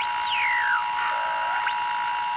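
Distorted electric guitar left ringing after the song ends: a steady held tone with high squealing pitch swoops over it, falling through the first second and rising again near the end.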